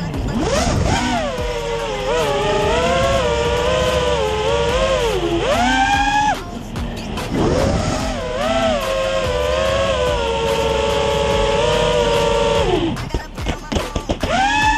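Racing quadcopter's brushless motors and propellers whining, the pitch gliding up and down with the throttle. The whine climbs sharply about five seconds in and cuts off a moment later, then comes back and holds fairly steady before falling away near the end.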